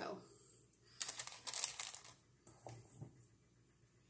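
Acorn squash slices being set down one by one on wax paper on a tray: a quick run of light taps and paper crinkles about a second in, then a few softer ticks.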